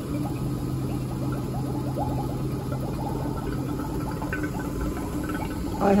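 Laboratory vacuum pump running just after being plugged in: a steady hum with a fast, even pulsing, as it pumps down the pressure in the apparatus.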